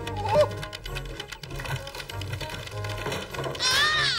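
Dramatic cartoon music under a clatter of crashing wood and tiles as a house falls apart. A high-pitched cry starts near the end.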